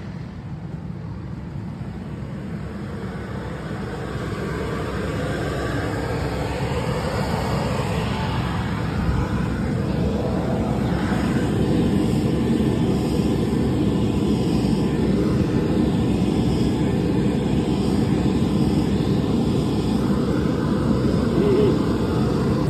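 Tractor running under load, pulling an Amazone Cirrus 6001 seed drill through dry soil. It is a steady engine and machinery noise that grows gradually louder over the first half, then holds.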